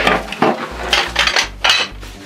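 Small hard household items clinking and clattering as they are handled and dropped into a plastic crate, a quick run of knocks with the loudest clatter near the end.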